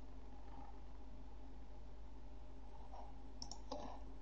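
Steady low electrical hum with a few faint clicks near the end, a computer mouse button being clicked.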